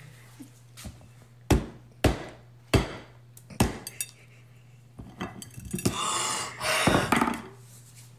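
A mallet striking a hard pink breakable heart on a plate: four sharp knocks in quick succession, cracking the shell, followed by a jumble of softer clattering noise in the last few seconds.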